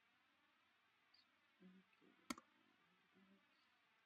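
Near silence with faint hiss, broken a little past halfway by a single sharp computer mouse click, with a brief low hum shortly before it and another shortly after.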